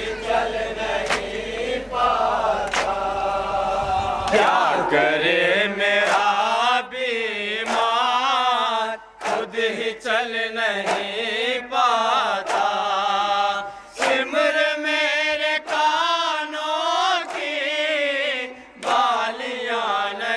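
Noha, an Urdu mourning lament, chanted by male reciters into microphones with long wavering held notes. A sharp strike about every three-quarters of a second keeps time: the mourners' hands beating their chests in matam.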